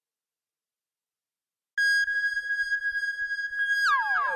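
Silence, then a little under two seconds in a steady high synthesizer tone starts in a dub track and holds. Near the end the tone glides sharply down in pitch, and a run of falling tones follows.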